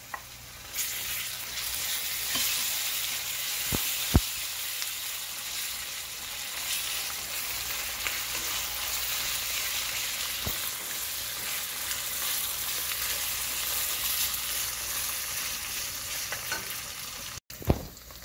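Onions and ginger garlic paste frying in hot oil in a stainless steel pan, sizzling steadily from about a second in as a wooden spoon stirs them. A few short knocks of the spoon against the pan stand out, two close together a few seconds in and one later.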